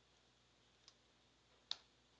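Two single computer keyboard keystrokes against near silence: a faint click about a second in and a sharper one near the end.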